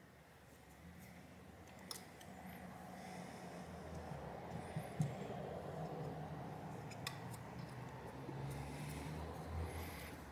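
Faint handling sounds of thermal pads being laid and pressed onto a graphics card board with tweezers: a few small clicks about two, five and seven seconds in, over a low steady hum.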